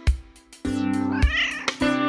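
A domestic cat meows once, a single call that rises and falls about a second in, over plucked guitar music.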